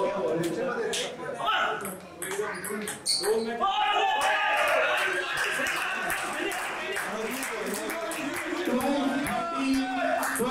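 Table tennis rally: the celluloid ball clicks sharply off bats and table in a large echoing hall. About three and a half seconds in, the point ends and a crowd of spectators breaks into cheering and shouting that carries on and slowly dies down.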